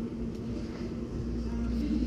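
Steady low hum with a constant tone and rumble: the background noise of a large store, with no distinct event.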